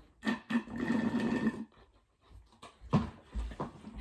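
Slurping a drink through a straw from a nearly empty plastic cup: a rough sucking gurgle lasting about a second and a half, followed near the end by a few short, softer sounds.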